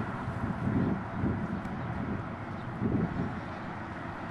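Outdoor traffic ambience: a steady rumble of road traffic with irregular low swells, typical of wind buffeting the microphone.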